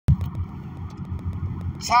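A sharp click, then a steady low rumble with faint irregular ticks; a voice starts reading near the end.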